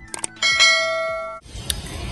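Quick clicks, then a bright bell-like ding: the notification-bell sound effect of a subscribe-button animation. It rings for about a second and fades.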